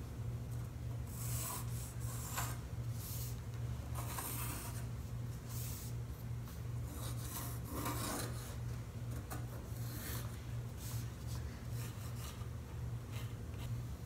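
Pencil scratching along a 2x4 as lines are traced against a wooden leg template, in short irregular strokes that come and go. A steady low hum runs underneath.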